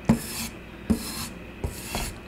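A wood-backed strop rubbed along a katana's edge in three quick strokes, each starting with a light knock.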